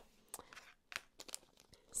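Faint crinkling and a few soft scattered clicks of small plastic bags of diamond-painting drills being handled.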